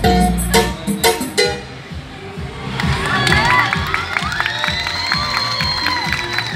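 A Brazilian funk dance track with a heavy bass beat stops abruptly about a second and a half in. Then a crowd cheers and shouts, with long high cries held over each other.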